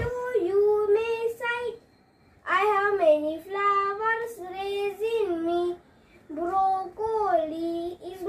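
A boy singing unaccompanied in three phrases of long held notes, with short pauses between them.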